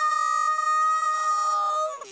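A cartoon character's voice holding one long, high cry on a single steady pitch, which stops just before the end.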